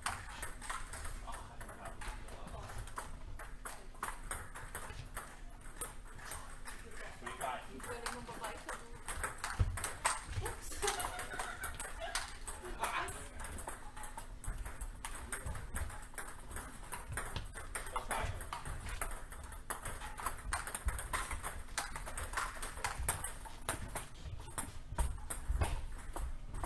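Table tennis balls clicking off paddles and the table in rallies, a steady run of quick, irregular clicks, with more knocks from neighbouring tables mixed in.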